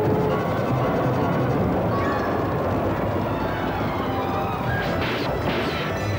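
Battle-scene soundtrack: a steady rumble of galloping horses under orchestral music, with several sharp clashing impacts of a fight about five seconds in and again near the end.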